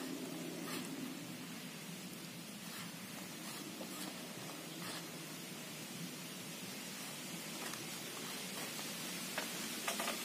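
Steady faint hiss of background noise with soft rustles and light clicks from hands tossing thin slices of banana stem in flour and seasoning on a banana leaf.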